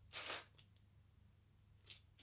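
Plastic LEGO pieces rustling and clattering briefly as a hand rummages through a loose pile, followed by a lull and a single light click near the end.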